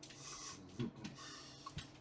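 Faint clicks over a low hiss, with a brief low voice-like sound just before a second in.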